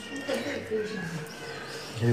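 Quiet, high-pitched talking by a woman, with gliding pitch.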